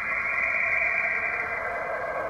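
Steady hiss of background noise, like radio static, with no distinct events.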